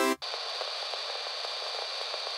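A sawtooth synth chord from Ableton Meld's chord oscillator cuts off just after the start. A steady, thin hiss like static follows, with no bass.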